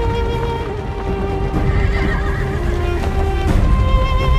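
Horses galloping in a mounted column, hoofbeats rumbling, with a horse neighing, under a film score of held notes.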